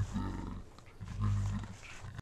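A man's low, muffled growl right at the microphone, in two short stretches, with some rumble from handling the camera.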